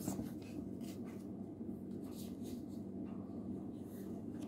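Faint, intermittent rustling and rubbing of handling noise: a few soft scrapes of paper and cloth close to the microphone as a paper mask is picked up and handled.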